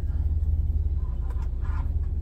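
A steady low rumble in a truck cab, with a few faint knocks a little over a second in as hands handle the microwave and cabinet.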